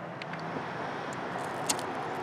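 Steady low background hum and hiss, with a few faint light ticks.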